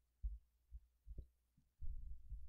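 A quiet pause with a faint low hum and four or five soft, dull low thuds spread through it.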